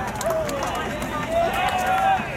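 Several voices calling out in drawn-out, overlapping shouts across a baseball ground, one long held call rising in pitch near the end.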